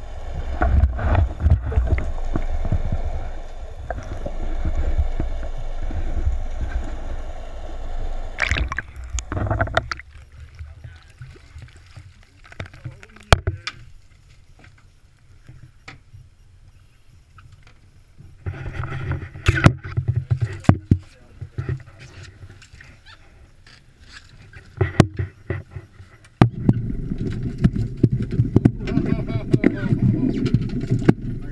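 Water rushing and gurgling past an action camera held under the surface, which cuts off about ten seconds in. Quieter boat-deck sounds follow, with scattered sharp knocks and clatter, and a loud steady low rumble starts near the end as a striped bass is netted on deck.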